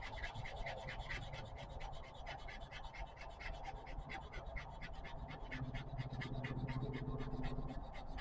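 Wooden dowel rubbed back and forth by hand on sandpaper: an even, rapid scratching of about five strokes a second as its end is sanded to a point. A faint low hum joins in during the second half.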